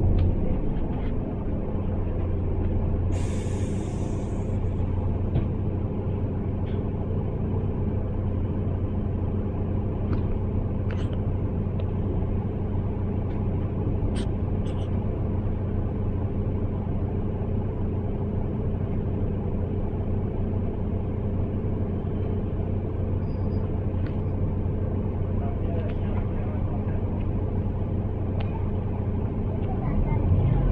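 Cabin sound of a Mercedes-Benz Citaro single-deck bus on the move: a steady low diesel engine drone with road rumble. About three seconds in, a short hiss of released air from the bus's air system.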